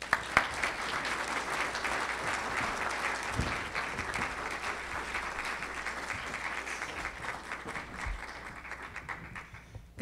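Audience applauding: many hands clapping in a dense patter that starts suddenly and thins out near the end.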